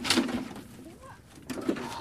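A person's strained, breathy grunts of effort while hauling a boat by a rope: a loud one at the start and a smaller one about one and a half seconds in.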